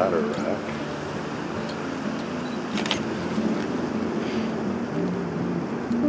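Indistinct voices over a steady background rumble.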